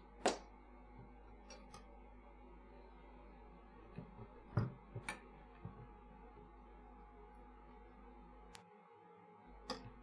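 Quiet workbench room tone with a steady low hum and a few faint, short clicks and taps from handling the circuit board and tools during hand soldering.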